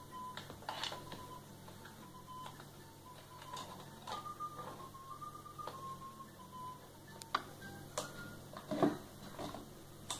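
Crayons knocking and clicking against a crayon pot and the tabletop as they are put into it, a series of light irregular knocks, sharpest in the last few seconds. A faint thin tune, stepping from note to note, plays underneath.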